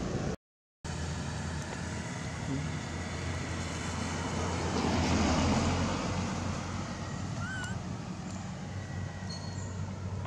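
Steady road traffic noise with a low hum; a vehicle passes, swelling about five seconds in and fading away. The sound cuts out for a split second near the start, and a few faint chirps come near the end.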